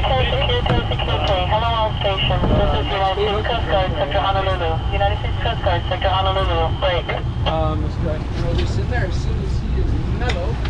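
A boat engine's steady low rumble under men's voices calling out, with a thin, steady high whine that stops about seven and a half seconds in.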